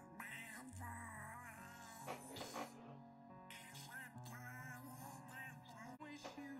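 A male voice singing over a musical accompaniment, faint, from a cartoon episode's soundtrack.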